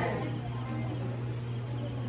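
Steady low hum under faint room noise.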